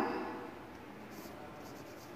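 Faint strokes of a marker writing on a whiteboard, the clearest a little after a second in.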